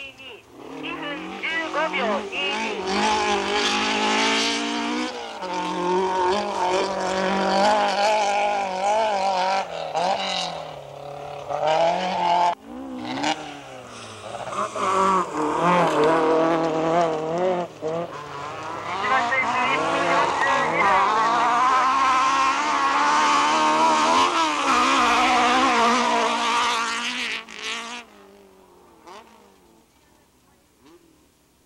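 Dirt-trial competition car's engine revving hard under load, its pitch climbing and dropping again and again through gear changes and throttle lifts. It falls away sharply near the end as the car pulls off into the distance.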